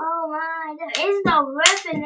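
A child's voice making drawn-out, wavering vocal sounds rather than words, with a couple of sharp knocks in the second half as the toy wrestling figures are slammed together.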